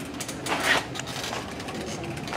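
Light handling noise: soft rustling and a few faint knocks, with a louder scraping rustle about half a second in.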